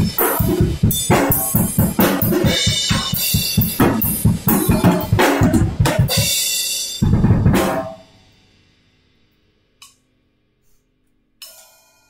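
Acoustic drum kit played in a fast groove, with rapid bass drum strokes under snare and cymbals. About seven seconds in it ends on a final loud hit that dies away within a second, followed by near silence broken by a couple of light taps near the end.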